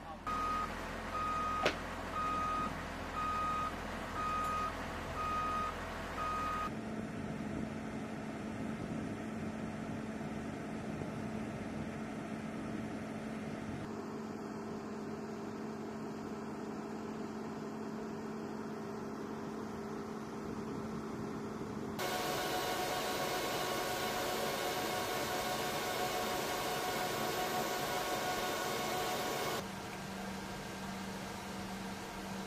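A cargo loader's reversing alarm beeping steadily, about once a second, for the first six seconds, over a low machine hum. Then steady turboprop engine noise with a constant hum across several cuts, loudest in the last eight seconds.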